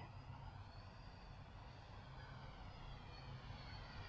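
Faint buzz of a small toy quadcopter's propellers in the distance, its pitch rising and falling gently over a low rumble.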